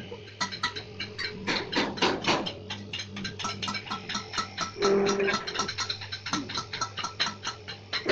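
Paper plate making machine running: a steady motor hum under rapid, irregular clicking and clattering, with a short steady tone about five seconds in.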